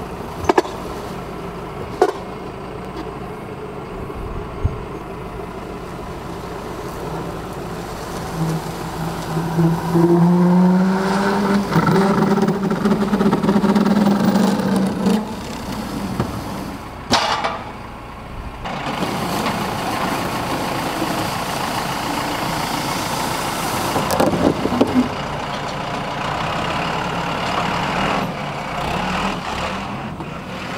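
Tractor engine running and revving up under load as it drags the heavy boiler on its timber skids across the concrete, with occasional sharp knocks and clunks.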